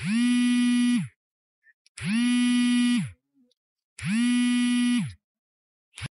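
Electronic buzzer tone beeping three times, each beep about a second long with a second's gap between. It is a steady, low, buzzy pitch that bends up slightly as it starts and drops as it cuts off.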